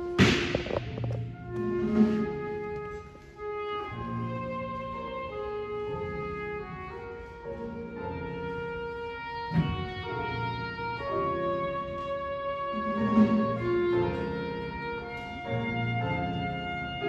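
Concert band playing held brass and woodwind chords. A loud crash comes just after the start, with further accented hits about 2, 9.5 and 13 seconds in.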